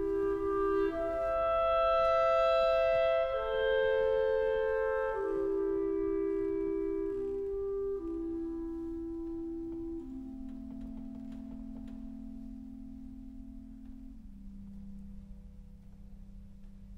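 Two clarinets playing a slow, soft passage of long held notes, often together in two parts, that steps downward and fades away over the last few seconds.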